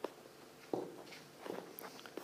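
Faint taps of a stylus on an iPad screen during handwriting: a sharp click at the start, then two soft knocks a little under a second apart.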